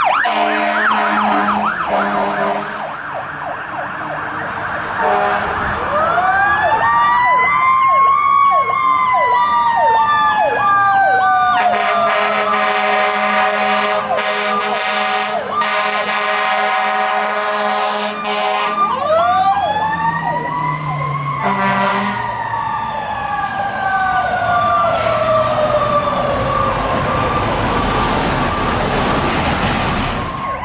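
Fire apparatus responding with an electronic siren yelping throughout. A Federal Q mechanical siren winds up and coasts slowly down twice, about 6 s in and again about 19 s in. Air horn blasts sound between them.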